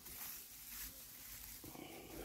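Faint rustling of dry straw mulch as a hand pushes down through it into loose soil.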